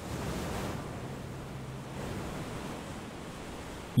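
Steady rushing of a rough sea and wind, with a faint low hum in the first half.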